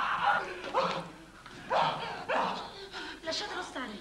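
A frightened man's wordless whimpering and moaning cries, in several short breathy bursts.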